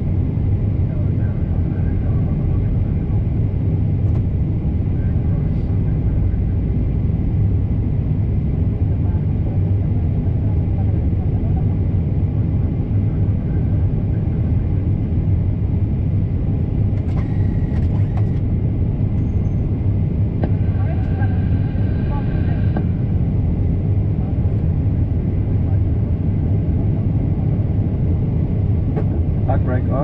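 Steady low rumble in an Airbus A320 flight deck as the airliner taxis, from its idling engines and cockpit airflow.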